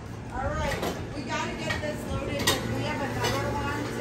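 Indistinct voices of people talking in the background, with one sharp click about two and a half seconds in.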